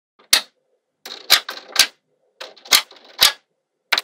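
Small magnetic balls snapping onto a grid of magnetic balls with sharp clicks and short rattles: a single click, then two quick clusters of clicks about a second apart.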